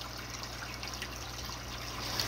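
Steady trickle of aquarium water from the filter's return, with a faint low hum underneath.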